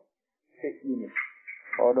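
A man's speaking voice: a half-second dead gap, then low voice sounds, and continuous speech picks up again near the end.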